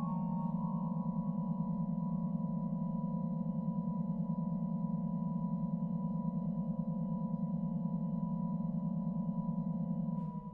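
Organ holding a sustained chord over a deep, beating low cluster, with a few quick notes just at the start before the chord settles.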